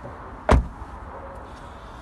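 A 2019 Toyota Prius door being shut: one solid thud about half a second in, over a steady low background hum.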